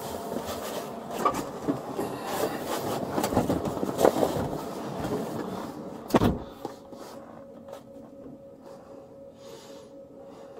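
Rustling, scuffing and knocks of a person climbing into the hard plastic rear seat of a police patrol car, with one loud thump about six seconds in. After it the cabin quiets to a steady hum.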